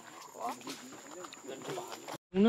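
Faint, indistinct voices of people talking at a distance, a few short syllables over quiet outdoor background noise.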